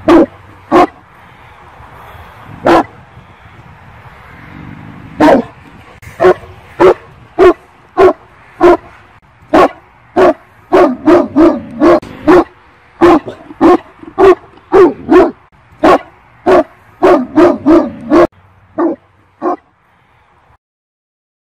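Anatolian shepherd barking: single barks a second or more apart at first, quickening into fast runs of barks in the second half, then stopping shortly before the end.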